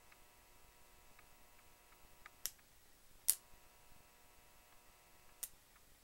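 Faint, steady electrical hum with many overtones from a transformer energized at 12 V AC under a 300 W lamp load. Three sharp clicks come in the second half as the wire connections are handled.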